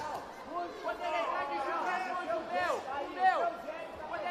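Several cage-side voices shouting and talking over one another, with one loud shout a little past three seconds in.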